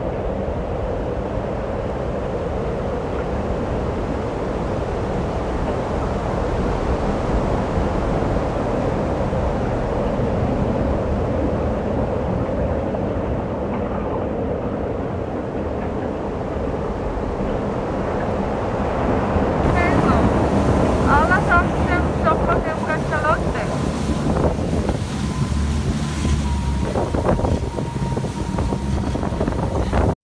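Steady rush of wind on the microphone and water noise aboard a moving boat, with passengers' voices heard faintly in the background.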